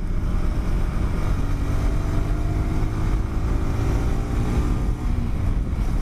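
Honda CBR150R's single-cylinder engine pulling under acceleration, its pitch climbing slowly over a few seconds, under a steady rush of wind noise.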